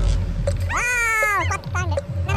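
A person's high-pitched voice: one drawn-out cry lasting under a second in the middle, falling in pitch at its end, over a steady low crowd rumble.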